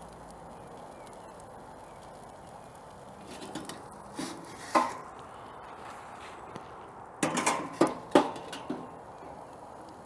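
Metal pizza peel knocking and scraping against a gas broiler pizza oven as the pizza is held under the burner and moved in and out: a couple of clinks about four to five seconds in and a quick cluster of them around seven to eight seconds, over a steady faint hiss.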